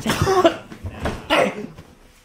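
A man coughing in two rough bouts, the first at the start and the second about a second and a half in.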